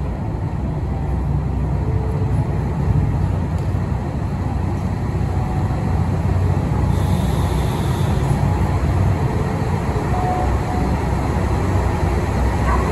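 KiHa 183 series diesel multiple unit pulling slowly into a platform, its diesel engines giving a steady low rumble that grows slightly louder as it approaches. A brief hiss comes about seven seconds in.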